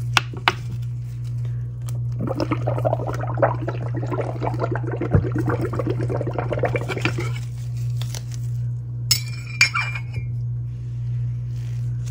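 A metal spoon stirring and clinking in a cup of dish-soap mixture for several seconds, then a few sharp taps against the rim, about nine seconds in. A steady low hum runs underneath.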